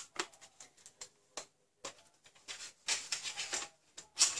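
Scattered light clicks and taps, then a quicker run of taps and rustles in the second half: small craft supplies such as an ink pad and stamps being handled and set down on a desk.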